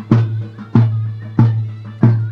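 Turkish folk dance music: a drum struck about every two-thirds of a second over a steady held drone, with a wind-instrument melody above.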